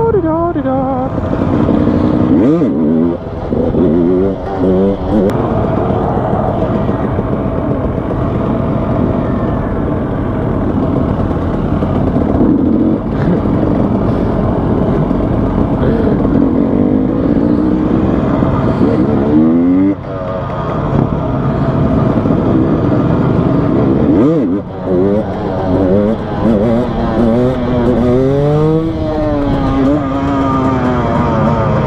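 Dirt bike engine heard from the rider's helmet, revving up and down through the gears: its pitch rises and falls a few seconds in, again about two-thirds through, and in a long swell near the end, over a steady rush of wind.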